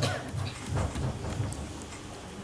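A few soft, low thumps and faint clicks over room noise, with no speech.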